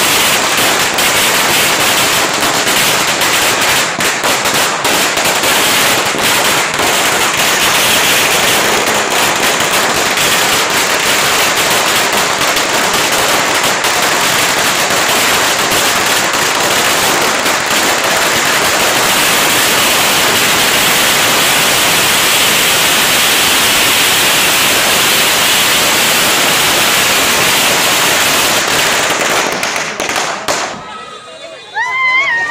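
Firecrackers bursting on the ground in a loud, rapid, unbroken crackle of bangs that dies away right at the end.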